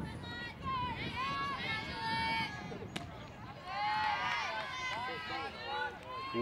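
High-pitched voices of girls shouting long, drawn-out calls in two stretches, typical of players cheering from the dugout. A single sharp click comes about halfway through.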